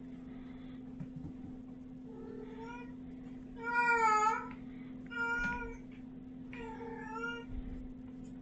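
A cat meowing four times, evenly spaced; the second meow, about four seconds in, is the longest and loudest.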